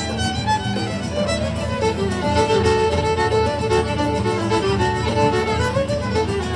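Live band music played through a stage PA, with a fiddle carrying the melody in held and sliding notes over a steady low accompaniment.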